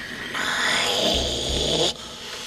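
A raspy hiss lasting about a second and a half, over background music with a low pulsing beat.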